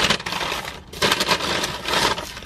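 Paper fast-food bag and burger wrapper rustling and crinkling as a wrapped burger is pulled out by hand, with a short lull a little under a second in.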